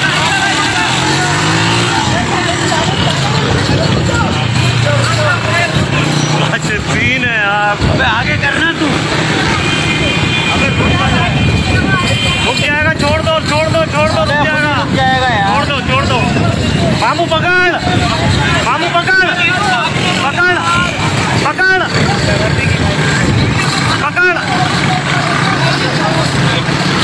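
Several motorcycle engines running at riding speed, with people shouting over them. A steady high-pitched tone sounds for about two seconds near the middle.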